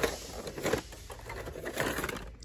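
Hot Wheels blister packs, card backs with plastic bubbles, clacking and rustling against each other as a hand flips through them in a cardboard box, in irregular bursts.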